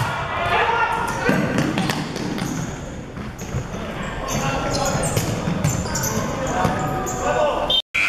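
Indoor futsal play in a sports hall: a futsal ball being kicked and played on a wooden court, with repeated sharp thuds, amid indistinct shouting from players and spectators. The sound cuts out briefly near the end.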